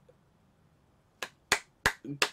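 A person clapping hands: three sharp claps, roughly a third of a second apart, beginning a little over a second in after a quiet pause.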